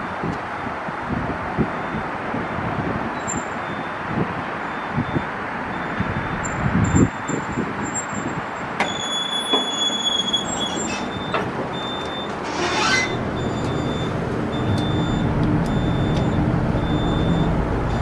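Otis hydraulic elevator in a parking garage arriving and opening its doors, with a high beep repeating in short, even dashes from about halfway in, over steady background noise. A low hum builds near the end.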